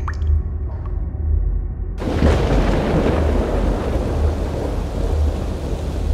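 Water drops plopping, then about two seconds in a sudden rush of heavy rain over a steady deep thunder-like rumble.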